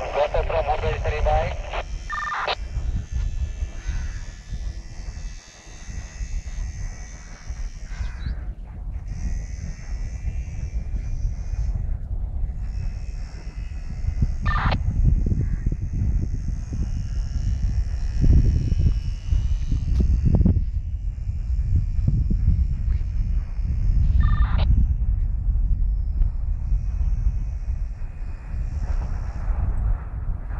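Wind buffeting the microphone in gusts, over the faint, high, steady whine of a radio-controlled model Cessna's motor flying overhead. A few short knocks break through.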